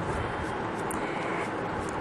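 Steady, even scratchy hiss of a toothbrush scrubbing old oil off the metal rotary hook parts of a sewing machine.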